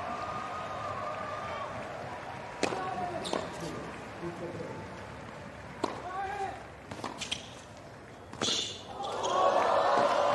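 Tennis rally on a hard court: racquet strikes and ball bounces as sharp pops at uneven intervals, the first about two and a half seconds in, over murmuring voices. Near the end the crowd breaks into loud cheering and applause as the point ends.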